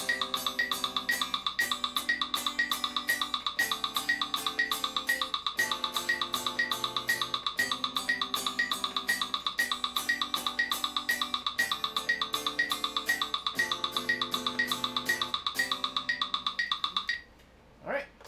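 Electric guitar strumming a progression of seventh chords, each chord held for about two seconds, over a steady metronome click at 120 beats per minute. The playing stops about a second before the end.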